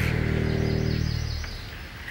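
Psytrance DJ set playing: held low synth bass notes with a quick run of high, bird-like chirping blips about half a second in, the music thinning and dropping in level near the end.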